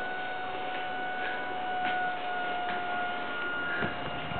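Electric recline-and-rise armchair's actuator motor running as the chair reclines, a steady whine that eases off shortly before the end as it reaches full recline.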